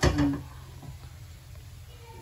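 A woman's speech ends in the first half-second. Then comes a quiet, steady low hum with faint frying from sesame balls cooking in a little oil in a wok over a low gas flame.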